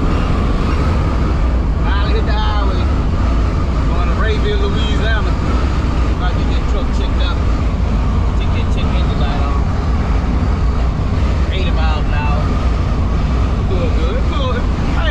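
Steady low drone of a semi-truck's engine and road noise heard from inside the cab while cruising at highway speed. A man's voice cuts in briefly three times, at about two seconds, five seconds and near the end.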